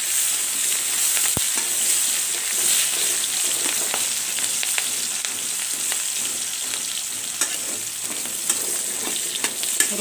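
Onion, garlic and green chillies sizzling steadily in hot oil in a metal karahi, with the spatula scraping and clicking against the pan now and then as it stirs.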